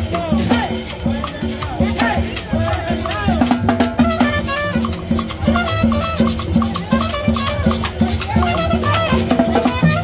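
Live street band playing upbeat Latin dance music: a trumpet playing held notes over drums keeping a steady beat.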